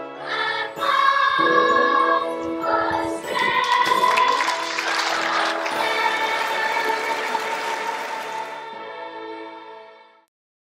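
A choir singing held chords. Applause breaks out about three seconds in and fades out shortly before the end, while the singing carries on.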